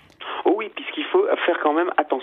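Speech only: a man talking over a telephone line, his voice thin and narrow in range, starting a fraction of a second in.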